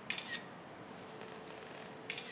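Smartphone camera shutter sound, a quick double click just after the start, as a photo is taken.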